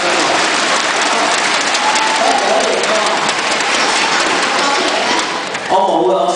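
An audience applauding, a dense crackle of many hands clapping, with a voice faintly heard through it. The clapping dies away just before the end.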